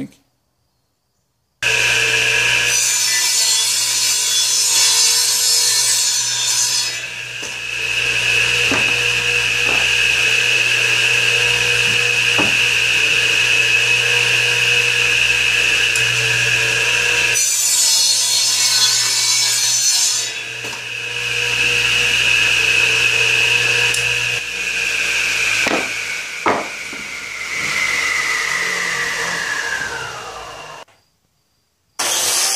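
Radial arm saw running with a steady motor whine while its blade cuts pallet wood into triangle pieces, with two cuts of a few seconds each and a few knocks of wood on the table. Near the end the saw is switched off and the whine falls in pitch as the blade winds down.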